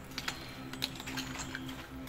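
Footsteps on a hard floor in a dark hall: a few light, irregular clicks and scuffs.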